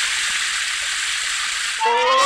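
Cartoon sound effect of tears spraying out in jets: a steady, hissing rush of water that stops near the end, where a rising whistle-like tone comes in.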